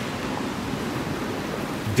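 Steady wash of sea waves against a rocky shore: an even, unbroken hiss.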